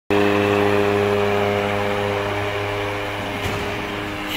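Electric motor of a ride-on helicopter exhibit humming steadily at one pitch, slowly getting quieter.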